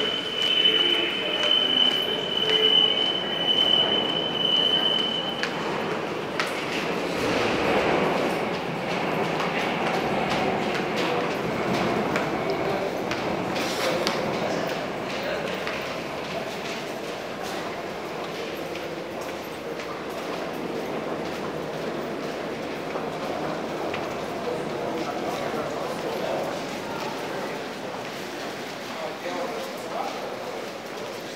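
Metro station noise: a steady, high-pitched squeal from a metro train for about the first five seconds, then the continuous hubbub of a crowd walking and talking through an underground pedestrian passage.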